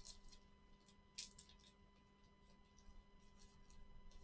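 Near silence: room tone with a few faint steady tones and scattered soft clicks, the most distinct about a second in.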